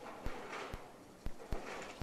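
Quiet bowling-alley background noise with four sharp, isolated clicks spread through it.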